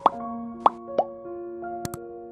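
Three quick cartoon plop sound effects in the first second, then two sharp clicks close together near the end, from an animated subscribe-button overlay, over soft keyboard background music.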